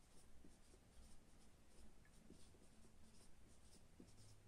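Marker pen writing on a whiteboard: faint, short, irregular strokes.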